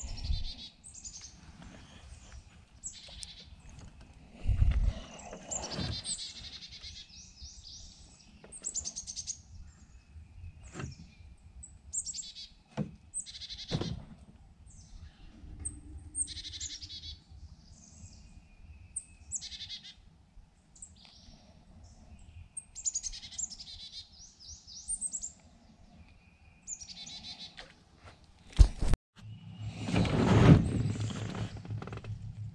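Wild birds chirping and calling over and over, short high calls and trills. A few knocks and thumps break in: a loud low one about four seconds in and a sharp double knock near the end, typical of tackle being handled in a small boat.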